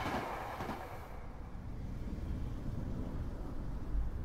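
Commuter train running past; its noise drops away suddenly about a second in, leaving a low rumble.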